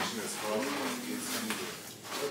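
Indistinct background speech in a kitchen, too faint for words, with a few light clicks from items handled on the counter.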